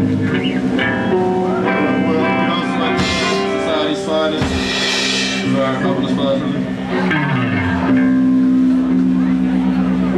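A band playing live: electric guitar notes and long held chords through an amplifier, with drums. A loud hissing burst comes about halfway through.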